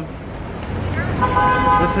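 City street traffic noise with one short car horn honk, a steady held tone lasting under a second, about a second in.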